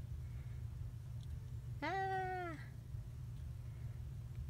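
A domestic cat meowing once, a single drawn-out meow just under a second long, about two seconds in; its pitch rises and then falls.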